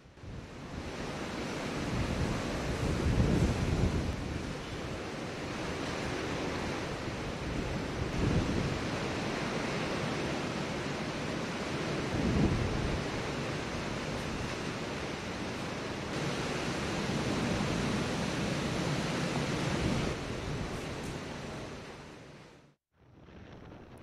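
Gale-force cyclone wind with heavy rain: a continuous rushing noise that surges in strong gusts every few seconds, with the wind buffeting the microphone.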